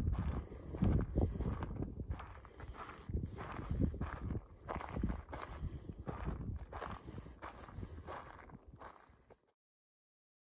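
Footsteps walking along a dry dirt path, a step roughly every second, getting quieter and then cutting off near the end.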